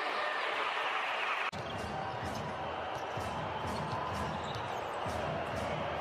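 Arena crowd noise, a steady cheer that cuts off abruptly about a second and a half in. It gives way to game sounds: a basketball being dribbled on the hardwood court under a low crowd murmur.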